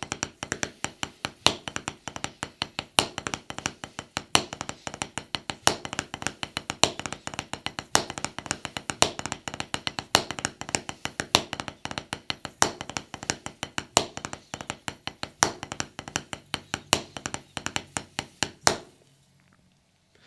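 Drumsticks playing the drag paradiddle #2 rudiment on a practice pad set on a snare drum: a fast, even stream of dry taps with drag grace notes and a louder accented stroke about every second and a half. It stops shortly before the end.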